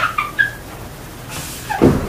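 Whiteboard eraser squeaking against the board in short, high chirps, several in the first half second. Near the end comes a louder, lower sound that falls in pitch.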